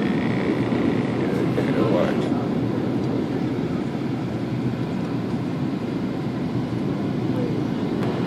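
Steady, even cabin roar inside an airliner descending to land.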